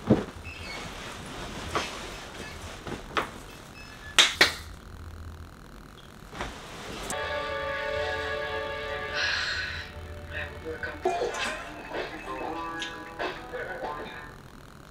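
Pillows and bedding being tossed about on a bed, with several sharp knocks in the first few seconds. About seven seconds in, music comes in for a few seconds, then fainter tones and taps.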